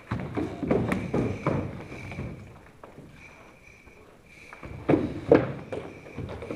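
Bare feet stepping, sliding and stamping on a wooden floor during karate sparring: a quick run of footfalls in the first two seconds, then a louder exchange of thuds about five seconds in.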